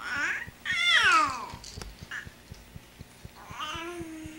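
Three-month-old baby cooing in high, squealy calls that glide up and down: two long ones in the first second and a half, a short one after that, and another near the end.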